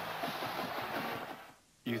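Faint voices fading out, a brief near-silent gap, then a man starting to speak loudly just before the end.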